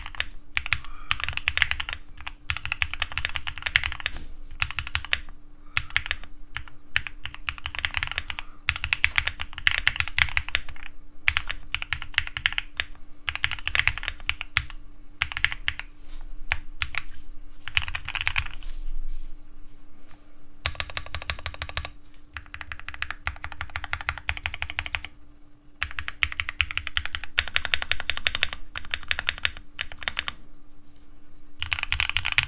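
Typing on a 60% mechanical keyboard with Novelkeys Cream switches, broken in, lubed and filmed, under ASA-profile keycaps: fast runs of key clacks, with two brief pauses in the last third.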